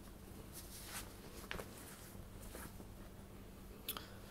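Near-quiet room with a few faint, brief rustles and light ticks of handling, and a sharper click just before the end as a hand reaches the airsoft pistol slide.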